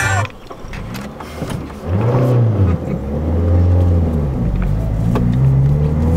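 Car engine heard from inside the cabin while driving, quieter at first, then louder from about two seconds in, its pitch rising and falling several times.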